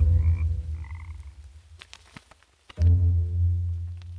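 Frogs croaking: two long, low, pulsed croaks, the second starting abruptly about three seconds in, with faint higher calls in the first second.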